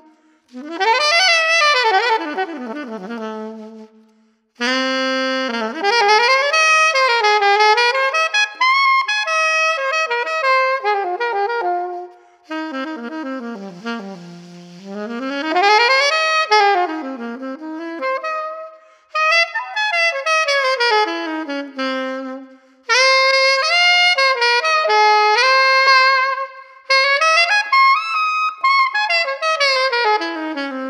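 Slavik Music alto saxophone played solo in a jazz improvisation: fast runs that sweep up and down across the range, in phrases broken by short breaths.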